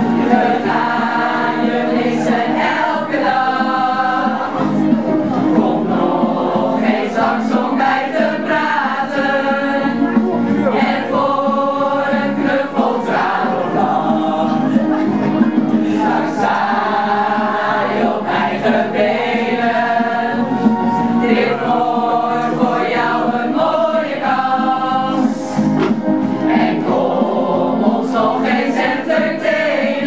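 A group of amateur singers, mostly women, singing a song together from lyric sheets.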